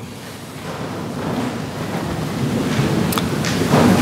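A congregation rising to its feet: a rustling, shuffling noise of bodies, clothing, feet and pages that grows steadily louder.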